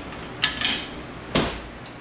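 Metal windshield wiper arms clacking as they are handled and set back down onto the glass: a couple of quick clicks about half a second in, then one louder clack near the middle.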